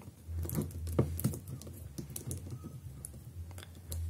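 Light clicks and taps of a large jointed plastic robot action figure being handled and posed, its limbs and hard plastic parts knocking together, a few irregular clicks a second.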